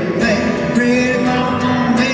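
A live rock band playing: male voices sing held notes over strummed acoustic guitars and a fiddle.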